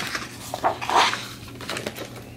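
Stiff page of a hardcover picture book being turned by hand: a paper rustle that swells to its loudest about a second in, followed by a few light ticks as the page is handled.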